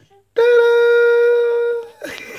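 A man's voice holding one loud, long sung note at a steady pitch, starting about a third of a second in and fading out near the end.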